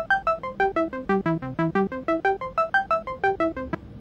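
FL Studio's channel arpeggiator playing a held C major chord on a synth channel, one note at a time: short notes at about seven a second, climbing and falling over a three-octave range in up-down mode. The run stops shortly before the end.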